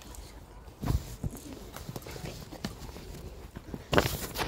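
Scattered short knocks and thumps, the loudest about a second in and another right at the end, over a faint low rumble and faint voices.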